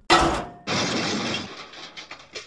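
A blow with a frying pan, as a comic sound effect: a sharp, briefly ringing clang, then about half a second later a longer crash that fades away.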